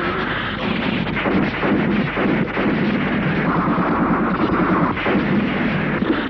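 Film gunfire sound effects: a dense, unbroken barrage of gunshots with heavy low rumble, shot following shot throughout.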